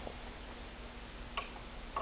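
Quiet room tone: a steady hiss with a faint hum, broken by two faint short clicks, one a little past halfway and one near the end.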